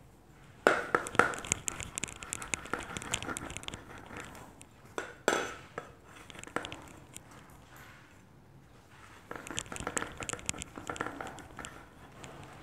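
Metal pipe rolled back and forth over a slab of clay on a wooden tabletop, giving rapid clicks and knocks of metal on wood. They come in two spells, one starting about half a second in and one near the end, with a single louder knock midway.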